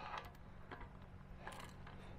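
Faint clicks of a hand wrench tightening the bolts of a cast aluminum well cap, a couple of light clicks about three-quarters of a second and a second and a half in.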